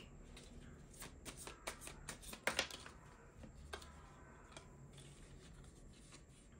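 A tarot deck being shuffled by hand: soft, irregular card clicks and rustles, the loudest just over two seconds in.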